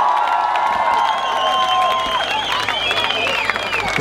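Large festival crowd cheering: many voices shouting and screaming in long held calls that waver in pitch, with some clapping.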